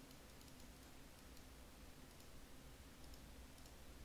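Near silence: room tone with a low hum and a few faint computer-mouse clicks scattered through.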